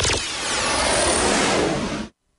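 Produced radio-intro sound effect: a loud, noisy rush like a passing engine, with several falling high whistles, that cuts off abruptly at the end.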